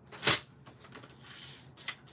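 A sheet of stamped cardstock is handled and slid onto a paper trimmer: one brief, loud paper rustle about a third of a second in, then soft paper handling and a small click near the end.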